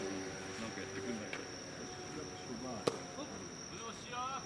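A steady high insect chirring under faint, distant voices calling across the field. A single sharp knock of ball play comes about three seconds in.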